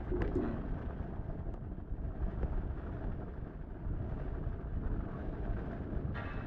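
Steady low background rumble, with no ringtone or dial tone standing out.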